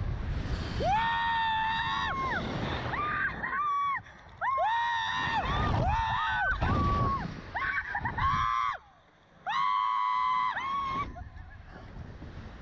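Riders screaming over and over on a slingshot reverse-bungee ride: a string of high-pitched screams of about a second each, with short breaks between, over a low rumble.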